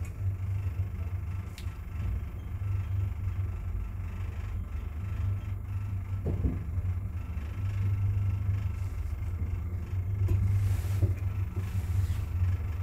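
Steady low rumble and hum of a 1972 Wertheim (Schindler) traction elevator, modernized by ThyssenKrupp, heard from inside the car as it travels upward. A brief knock comes about six seconds in, and the ride noise grows a little louder near the end.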